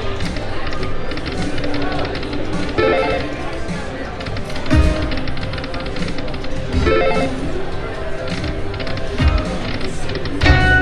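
Aristocrat Dragon Link slot machine playing its game music and reel-spin sounds, with a new spin starting about every two seconds.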